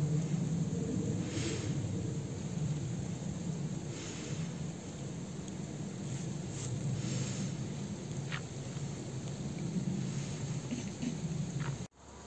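Wind buffeting the microphone: a steady low rumble that rises and falls slightly, cutting off suddenly near the end.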